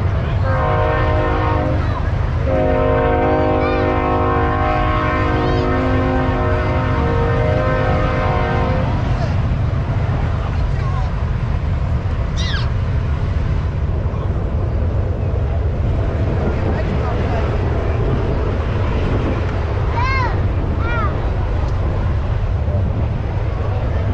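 Train horn sounding a steady multi-note chord: a short blast, then a long one that stops about nine seconds in. It runs over a constant low rumble, with a few short high calls later on.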